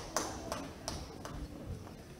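About four sharp taps, roughly one every third of a second, each with a short echo in a large hall, over a low murmur.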